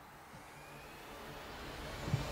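A whooshing swell in a promotional video's soundtrack, growing steadily louder and building into music.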